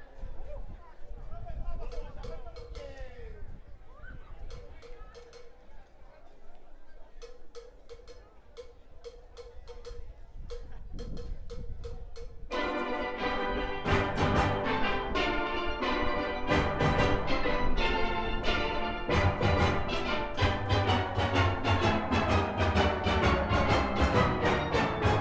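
Crowd chatter with sharp, evenly spaced percussion ticks. About halfway through, the full steel orchestra comes in together, with massed steelpans and bass pans playing loudly.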